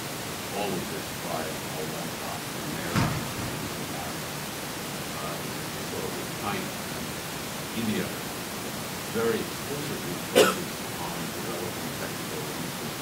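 Faint, distant speech from an audience member talking away from the microphone, over a steady hiss. Two short sharp sounds cut through it, one about three seconds in and a louder one near the end.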